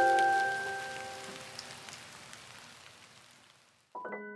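The last chord of a lofi hip-hop track rings out and fades away over a soft rain-like patter, which dies away too, leaving the track nearly silent by the end.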